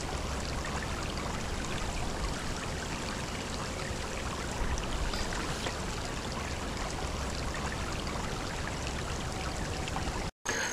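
Shallow creek water running over rocks, a steady rush and trickle.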